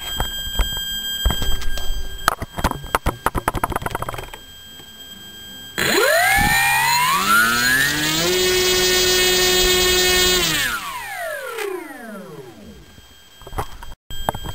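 Turnigy SK3542 brushless outrunner motor spinning a 9x6 APC propeller on an RC model plane in a full-throttle static run-up. About six seconds in it winds up with a steeply rising whine, holds steady at full throttle for about two seconds, then winds down with a falling whine. Clicks and rattles come first.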